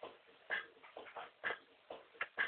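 American Staffordshire Terrier puppy barking in short, sharp yaps, about five in two seconds.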